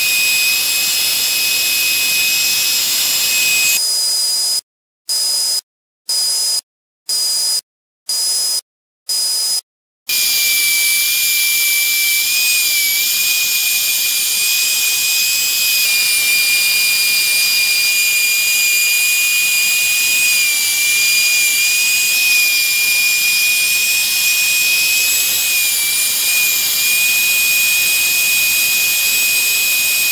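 Small Katsu quarter-inch trim router running at a high, steady whine as its 2.5 mm bit routes a bow-tie recess in wood. The pitch dips slightly now and then. Between about four and ten seconds in, the sound cuts out to silence six times.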